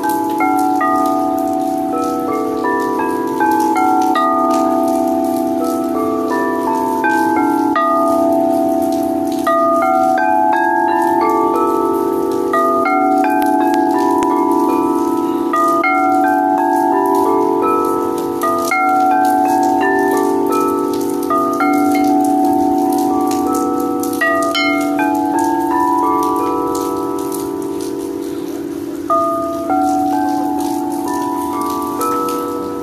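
Quartz crystal singing bowls ringing with long, overlapping low tones, while higher bell-like notes step up and down in repeated runs. Rain patters lightly underneath.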